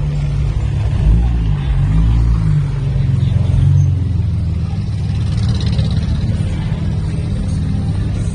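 A motor vehicle's engine running close by in street traffic, its pitch rising and falling for a few seconds as it passes, over steady low background noise.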